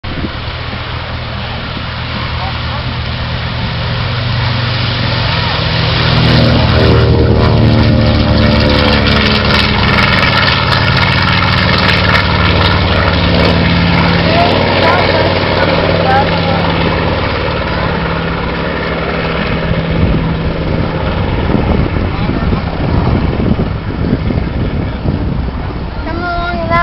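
Twin piston engines of a B-25 Mitchell bomber at takeoff power: the drone grows louder, peaks about six seconds in with its pitch sliding down as the plane passes, then slowly fades as it climbs away.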